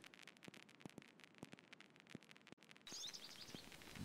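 Near silence with faint, irregular clicks. About three seconds in, faint outdoor background comes up with a quick series of high, short bird chirps.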